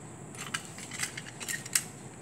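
A few light clicks and taps, irregularly spaced, as a small aluminum cube is lifted out of a glass beaker of water and handled.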